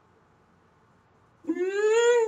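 A loud, drawn-out meow-like call starts about one and a half seconds in, rising in pitch.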